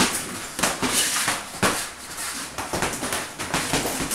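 Boxing gloves landing during sparring: an irregular run of sharp smacks and thuds, a few each second, in a small room.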